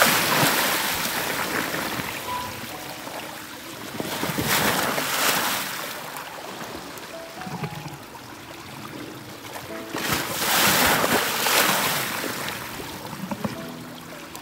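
Lake waves splashing against and washing over a block of shore ice, in three surges: one at the start, one about five seconds in and one about eleven seconds in, with lapping water between them.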